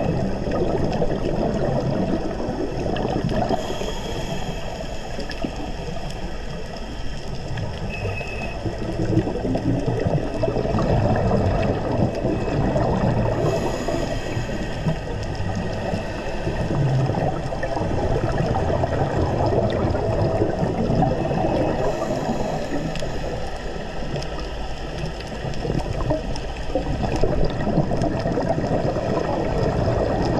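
Underwater scuba sounds: a diver's regulator breathing and exhaled bubbles rumbling and gurgling, with a brief higher hiss about every nine seconds.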